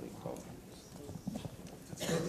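Indistinct murmur of people in a room, with scattered light knocks and clicks.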